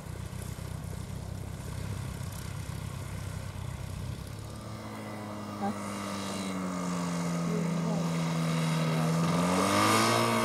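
A Tiger Moth biplane's engine taxiing at low revs, a low, uneven rumble. About halfway through, a microlight's engine takes over, a smoother and higher steady hum that grows louder and rises in pitch near the end.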